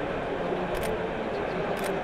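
Camera shutter firing twice, about a second apart, in step with the speedlite flash, over the steady background hum of a busy exhibition hall.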